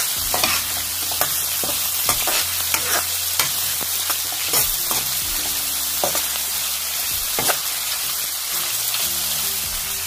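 Chopped onion and dried chile japonés frying in hot oil in a pan while being stirred. The oil makes a steady sizzle with frequent sharp pops and crackles as the onion begins to soften.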